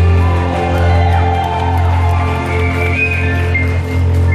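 Live band of drums, keyboard and guitars playing an instrumental passage: a held chord over a steady low bass note, with a few short gliding guitar lines on top in the middle.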